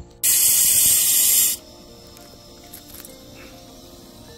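Hawkins pressure cooker on a portable gas-cylinder stove letting off steam: one loud hiss lasting just over a second that starts and cuts off abruptly, over faint background music.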